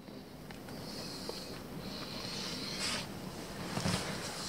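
Faint rustling and handling noise from a handheld camera being moved, with a few light ticks and a slightly louder rustle about three seconds in.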